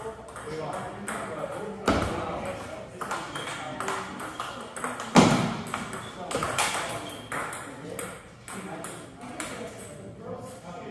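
Table tennis rally: a quick run of sharp clicks as the celluloid/plastic ball strikes paddles and the table, with two much louder hits about two and five seconds in.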